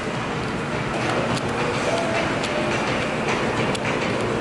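Shopping cart wheels rolling and rattling steadily over a hard store floor.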